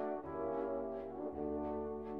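Background music: held brass chords over a sustained low bass, moving to a new chord a little over a second in.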